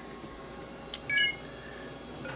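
A click, then a short electronic chime of a few tones together: the signal that the iPad has just been connected to the computer by USB cable.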